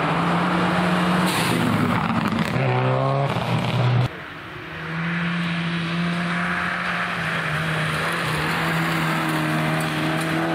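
Subaru Impreza WRX STI rally car's turbocharged flat-four engine accelerating hard, its revs rising sharply a few seconds in. About four seconds in, the sound cuts abruptly to a second, smaller Peugeot 106 rally car engine. That engine runs at steadier revs as the car approaches, then rises again near the end.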